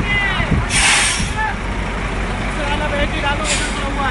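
Heavy truck engines running with a low rumble, cut by a loud burst of air-brake hiss about a second in, lasting about half a second, and a shorter hiss near the end.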